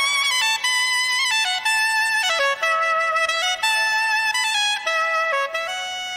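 Soprano saxophone playing a solo melody, a single line of held notes stepping up and down, the first reached by a rising slide.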